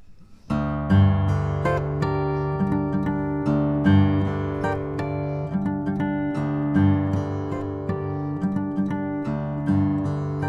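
Maingard GC grand concert acoustic guitar with Brazilian rosewood back and sides and an Italian spruce top, played fingerstyle in open G minor tuning. The playing starts about half a second in, with deep bass notes ringing under chords and melody picked high up the neck.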